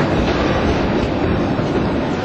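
Jungfrau Railway train running, a steady rumble with rattle and no break.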